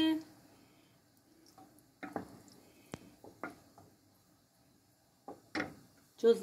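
Wooden spoon stirring thick blended soup in a metal pot, with a few soft knocks and clicks of the spoon against the pot, spaced out over several seconds.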